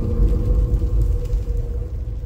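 Deep, loud rumbling drone with a steady ringing tone held above it, a dark, ominous sound-design effect leading into a logo reveal.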